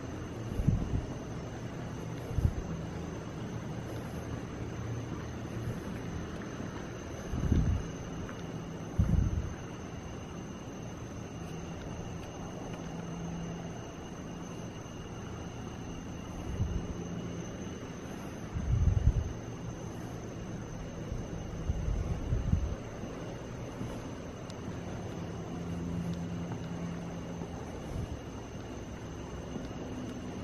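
Steady low outdoor rumble with two faint, steady high-pitched tones, broken by a handful of irregular dull low thumps. The loudest thumps come about a quarter of the way in and about two-thirds of the way in.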